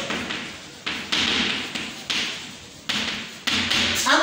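Chalk tapping and scraping on a blackboard as words are written: a series of short strokes, each starting sharply and fading away, about five of them after the first second.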